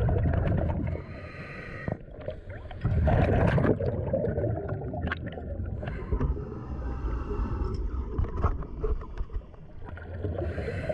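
Scuba diver breathing through a regulator, heard underwater: exhaled bubbles rumble out in a burst at the start and again about three seconds in, with softer hissing and small clicks and crackles between.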